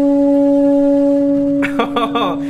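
A steady electronic test tone with a buzzy row of overtones, played through a speaker into the gas-filled box of a pyro board (a two-dimensional Rubens tube). The tone is set to the box's fundamental standing-wave mode. It holds one unchanging pitch, and a laugh breaks in near the end.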